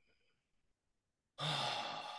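A man's heavy sigh: one long breathy exhale starting about a second and a half in, running straight into his next words.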